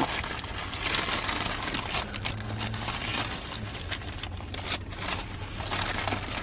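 Takeout bag and paper wrapping crinkling and rustling as a sushi burrito is unwrapped and handled, in many small irregular crackles.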